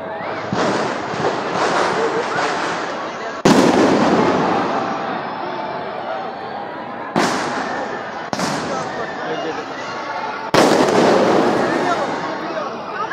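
Aerial firework shells bursting: a loud bang about three and a half seconds in, two more about seven and eight seconds in, and another near the end, each trailing off in a long echoing rumble, over continuous crackle and pops from other fireworks.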